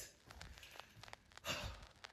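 A person's short sigh-like exhale about one and a half seconds in, amid near silence.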